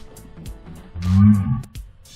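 Background music, with a deep, drawn-out voice-like cry about a second in that rises and then falls in pitch.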